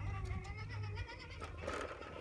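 RC rock crawler's electric motor and gears whining under load as it climbs a steep ramp. The whine wavers slightly in pitch and eases off about a second in.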